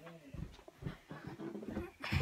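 Soft, irregular low thumps and rustling from a handheld phone being carried while walking indoors.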